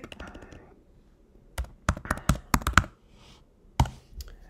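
Typing on a computer keyboard. There are a few light keystrokes at the start, a quick run of several keys in the middle, and one sharper keystroke near the end.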